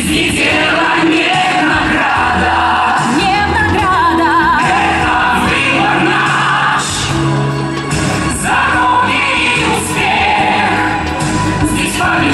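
A group of women's and men's voices singing a pop song into microphones over a full musical accompaniment. About three to five seconds in, one voice holds notes with a wide vibrato.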